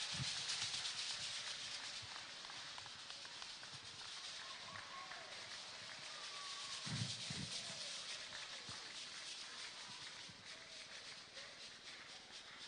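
Large audience applauding, loudest at first and slowly dying away, with a few voices calling out over it and a dull thump just past the middle.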